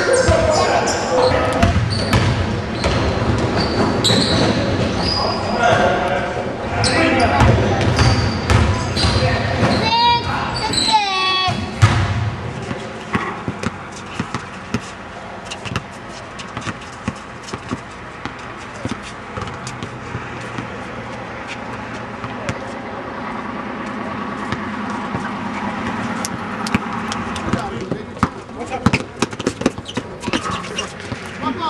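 A basketball bouncing on a court during a pickup game, with players' voices calling out. The first part is busy with shouting and bounces; after that comes a long run of short, sharp bounces and knocks.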